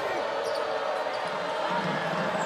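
Steady crowd murmur in a basketball arena, with a basketball being dribbled on the hardwood court.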